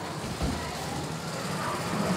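Low street background noise, a steady even hum, with one soft thump about half a second in.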